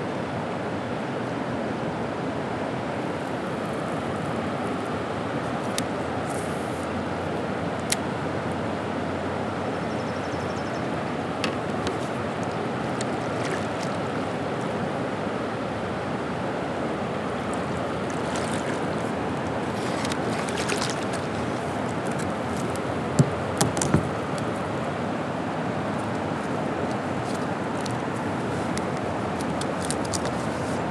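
Steady rush of river water pouring over a low dam, with a few short sharp knocks, the loudest a quick cluster about three-quarters of the way through.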